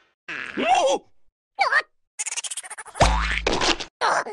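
Cartoon larva characters making wordless vocal groans and exclamations, along with comic sound effects: a fast rattle of clicks about two seconds in, then a heavy low thud a second later.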